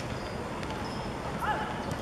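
Steady outdoor background noise with one short shout from a voice on the pitch about one and a half seconds in, its pitch bending.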